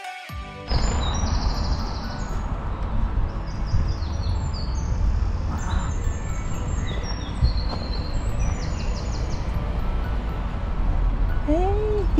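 Woodland birds singing: several songbirds with short, high, repeated trilling phrases over a steady low rumble. Background music cuts off within the first second, and a child's voice rises and falls near the end.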